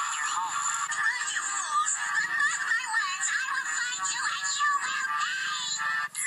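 A pop song with a high singing voice, played through a TV's speaker and picked up off the screen, so it sounds thin with little bass.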